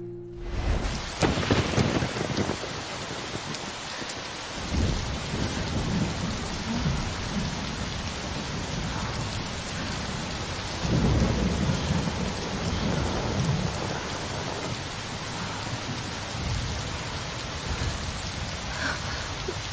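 Heavy rain pouring steadily, with rolling thunder. The thunder swells into louder rumbles about a second in and again around eleven to thirteen seconds in.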